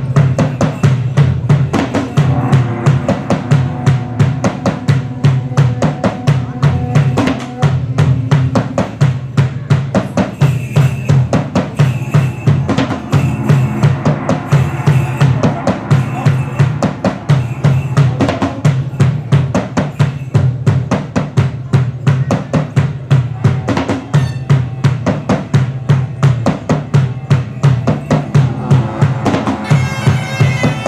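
Band of large drums and bass drum playing a fast, steady rhythm, as the percussion lead-in to a medieval-style minstrel tune.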